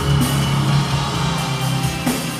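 Heavy metal band playing live: distorted electric guitar, bass guitar and drum kit together in a dense, bass-heavy wall of sound.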